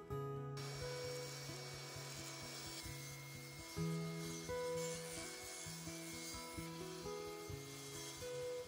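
Portable table saw cutting a plywood panel, a steady noisy rush of blade through wood starting about half a second in, mixed under acoustic guitar music.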